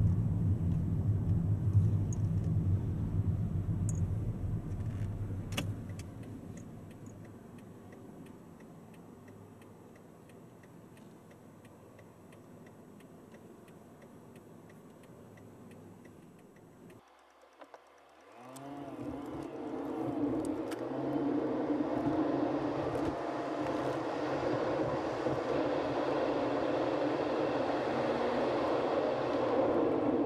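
Car cabin noise: a low engine and road rumble that fades off over the first several seconds. After an abrupt cut, a different steady sound with several held tones starts a little past halfway and runs on.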